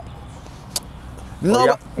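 A man's voice says a short word near the end, after a pause filled with a steady low rumble. There is a single brief click about a second into the pause.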